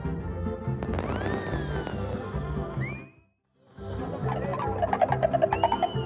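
Online slot game background music with a repeating bass line, overlaid with whistle-like gliding tones that rise and fall, about a second in and again near the end. The sound drops out entirely for about half a second around the middle, then the music resumes.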